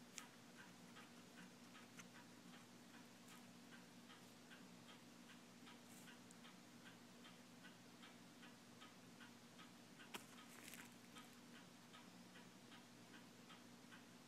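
Near silence: faint, regular ticking, about three ticks a second, over a low steady hum, with one brief click about ten seconds in.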